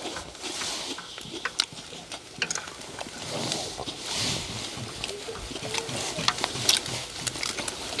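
Close-up eating sounds: chewing and lip-smacking on mouthfuls of egg fried rice, with wooden spoons clicking and scraping against a large wok.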